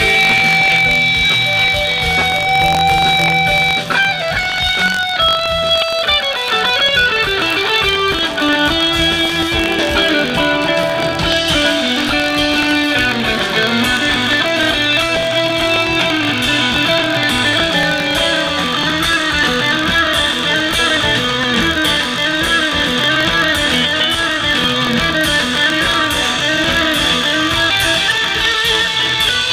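Live rock band playing, led by electric guitar over drums and bass. A guitar holds long notes for the first four seconds or so, then plays quick descending runs of notes, followed by wavering, bending lines.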